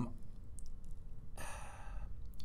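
A man draws an audible breath in through the mouth in a pause in his speech, a short noisy intake starting about one and a half seconds in.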